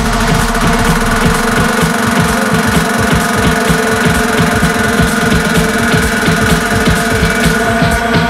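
Electronic dance music in an instrumental stretch without vocals: a fast, pulsing bass line under held synth tones, with steady hi-hat ticks on top.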